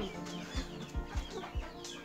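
A hen clucking in a series of short calls, with a few soft low knocks under them.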